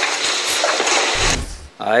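A short, low thump about a second in, over a steady hiss, with a man's voice starting again near the end.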